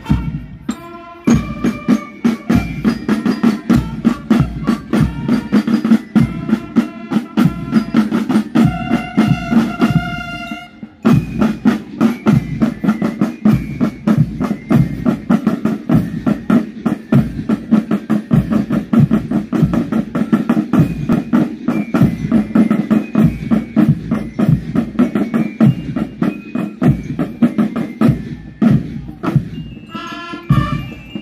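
Marching band drums, snare drums and bass drums, playing a fast, driving beat, with bell lyres ringing out a melody over them for about the first ten seconds. After a short break around eleven seconds, the drums carry on mostly on their own.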